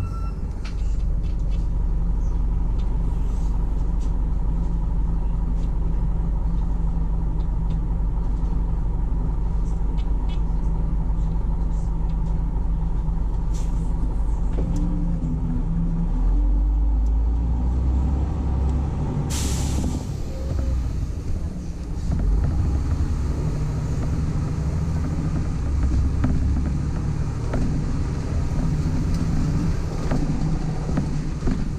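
Articulated DAB 12-series city bus's diesel engine idling steadily while stopped, then pulling away from about 16 s in with the engine note rising and shifting under load. A short sharp hiss of air comes from the bus's air system about 19 s in.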